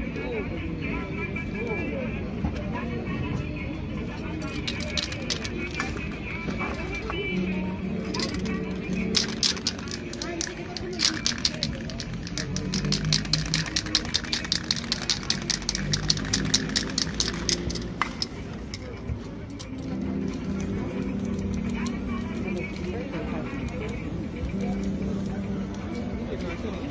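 An aerosol spray-paint can worked in a quick run of short, sharp strokes, about four a second, through the middle part. From about three-quarters of the way in, a steady spray hiss follows.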